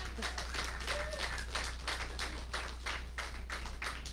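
Congregation applauding: many people clapping in a dense, steady patter.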